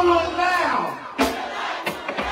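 A live go-go band's music thins out under a loud shouted vocal call and crowd voices, with two sharp percussion hits, one a little over a second in and one near the end.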